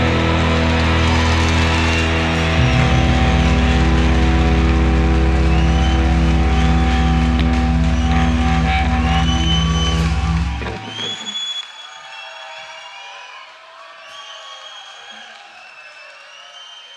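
A live rock band holds its closing chord on distorted guitars and bass, and the chord cuts off about eleven seconds in. A quieter audience noise with high whistles follows.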